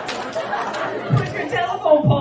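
A man talking into a microphone over audience chatter in a large room, the speech starting about a second in.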